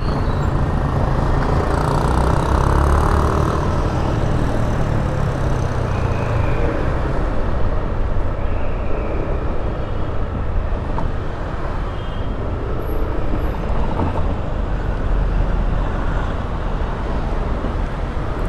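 Motorcycle ride in city traffic: the bike's engine running with steady road and wind noise, a continuous low rumble with no distinct events.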